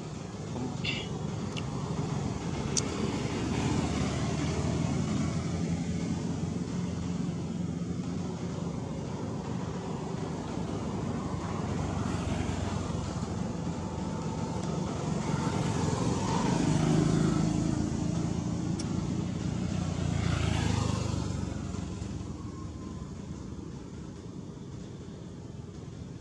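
Low rumble of motor traffic, swelling to its loudest about two-thirds of the way through and fading near the end.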